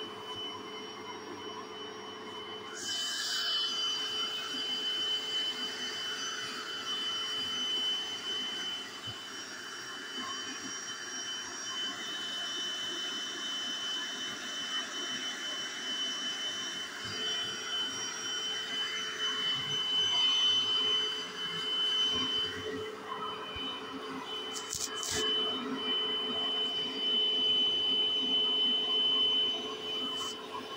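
Bissell SpotClean portable carpet cleaner running, its motor giving a steady high-pitched whine under the noise of suction through the hand tool as it is worked over carpet. The suction gets louder about three seconds in and then swells and dips with the strokes.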